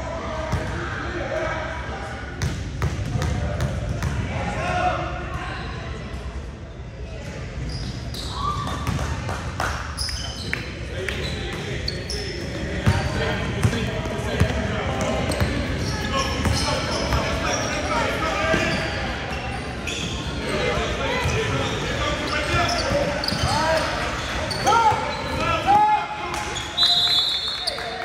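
Basketball being dribbled on a hardwood gym floor, with sharp bounces and short sneaker squeaks during play, and players and spectators calling out in a large echoing gym.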